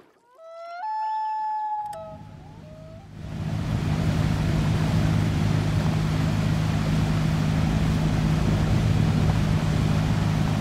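Common loon wailing: a long call that rises, steps up to a higher note and holds, then a shorter second note. About three seconds in, a steady engine drone with a low hum starts and continues.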